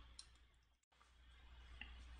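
Near silence: faint room tone with a low steady hum, broken by a brief dead-silent gap just before the middle and one or two faint clicks.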